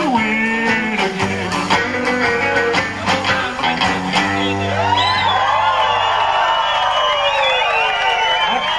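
Live rockabilly band (electric guitar, upright bass and drums) playing the closing bars of a song. About five seconds in the music stops and the club audience cheers and whoops.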